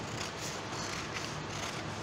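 Scissors cutting through a sheet of ruled paper along a pattern line: a faint, even cut with no sharp snips.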